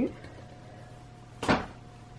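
One short, sharp thump about one and a half seconds in, a paperback colouring book knocked or set against a tabletop. Otherwise quiet, with a faint steady hum.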